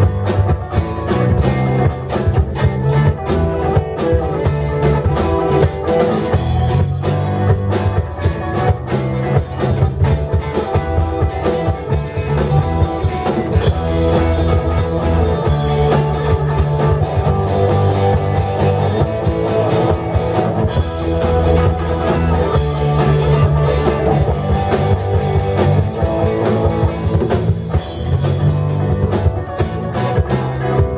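Live rock band playing: electric guitars over a drum kit, with a low bass line that moves in steps.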